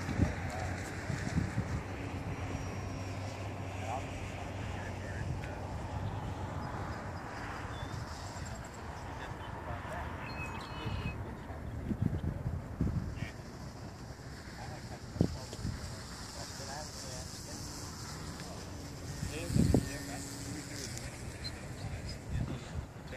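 Steady wind noise on the microphone in open air, with faint murmured voices and a few soft handling bumps.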